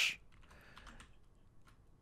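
Faint computer keyboard typing: a few scattered keystrokes in the first second or so.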